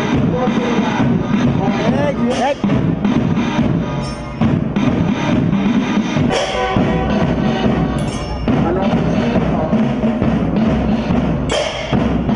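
A school marching band's bass drums, snare drums and hand cymbals playing a marching beat, with several cymbal crashes.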